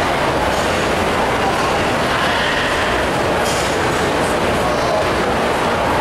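Steady, loud background din of a crowded indoor show arena: a constant rushing noise with no break or change, under the faint murmur of the crowd in the stands.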